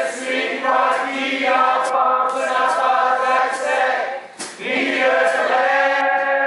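Several male voices singing together in harmony, live, with little or no instrumental backing under them and a short break about four and a half seconds in.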